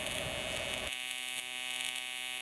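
AC TIG welding arc on aluminum plate: a steady buzzing hum made of many evenly spaced tones. About a second in, the background noise beneath it drops away and the hum stands out more cleanly.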